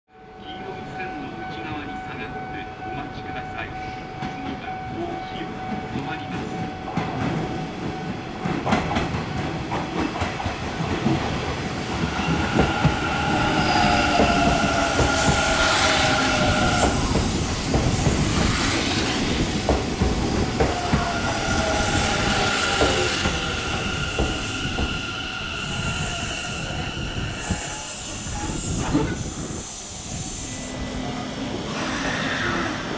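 Hanshin 1000 series electric train's Mitsubishi IGBT-VVVF inverter and traction motors whining as the train changes speed along a platform. The inverter's tones glide in pitch in two stretches, in the middle and later on, over the rumble of wheels on rail.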